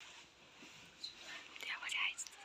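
Quiet whispering, with no clear pitch, growing a little louder near the end.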